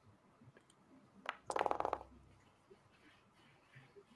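Virtual-tabletop dice-roll sound effect: a short clatter of rapid clicks about a second in, lasting under a second, with faint room tone around it.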